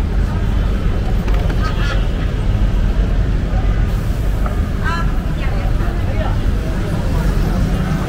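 Busy street ambience: a steady low rumble of passing traffic under faint voices, with two short high calls about two seconds and five seconds in.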